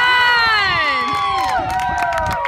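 Baseball players and spectators cheering and shouting together right after a strikeout, many voices yelling at once and easing a little toward the end.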